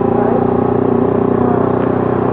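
Bajaj Pulsar NS200 motorcycle engine running at a steady speed while riding, a constant, even drone with no change in pitch.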